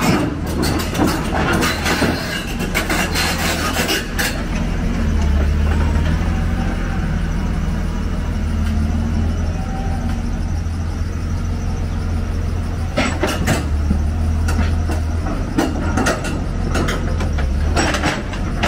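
Hyundai 290LC-9 crawler excavator's diesel engine running steadily under load as it tracks up steel ramps onto a lowbed trailer. Steel track shoes clank against the ramps in the first few seconds and again in the last few seconds.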